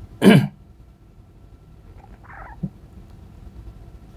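A man's single short laugh right at the start, then room tone with a faint soft sound and a small click about two and a half seconds in.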